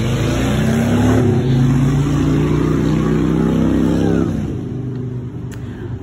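A car's engine revving loudly as it passes close by. It builds in the first second, holds for about three more seconds, then fades away.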